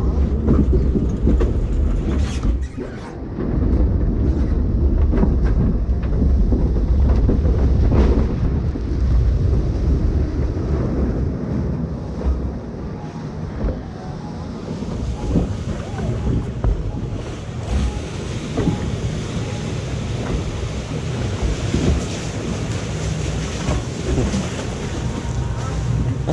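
Mack log flume boat on its ride: heavy wind buffeting the microphone during the run down, then an even hiss of rushing water around the hull from about ten seconds in as it glides along the flume channel.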